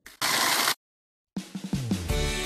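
Britânia countertop blender switched on, its motor running on fruit and water for about half a second before cutting off abruptly. After a brief silence, background music with a drum beat comes in.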